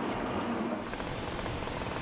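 Low steady background rumble. About a second in, it gives way to a broader, even hiss of road traffic.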